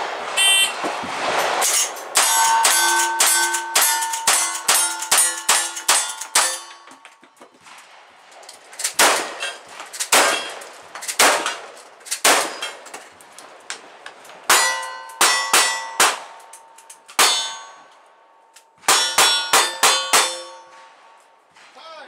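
A shot-timer beep, then a cowboy action shooting string: gunshots from lever-action rifle, shotgun and single-action revolvers, with steel targets ringing after the hits. There is a fast run of about ten shots, a pause, a slower run of cracks, then two quick runs of about five shots each.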